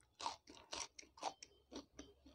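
Close-up chewing of crisp fried strips, a steady run of crunches about twice a second.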